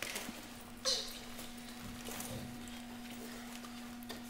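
Soft rustling and small clicks of firefighters' turnout coats and SCBA facepiece straps being handled as the masks are put on, with one louder brushing sound about a second in. A steady low hum runs underneath.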